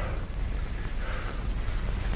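Steady hiss and low rumble of an old 1930s film soundtrack, with a few faint, short sounds in it.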